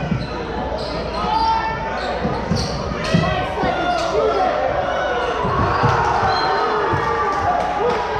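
Basketball being dribbled on a hardwood gym floor during live play, with scattered thuds, alongside players and spectators calling out, echoing in the gym.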